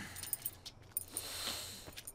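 A few light metallic clicks and jingles of a key ring being handled at a scooter, followed by a soft rustle.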